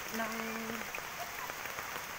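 Steady rain falling on wet ground and foliage, a constant hiss with scattered individual drops.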